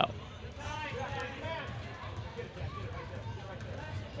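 Gymnasium background during a youth basketball game: faint, distant voices of players and spectators carrying across the hall over a steady low hum.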